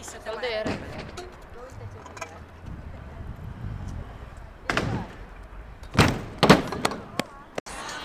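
Freestyle scooter impacts at a skatepark: a sharp clack about halfway through, then two louder bangs about six seconds in, as the scooter lands or strikes the ground and ramps.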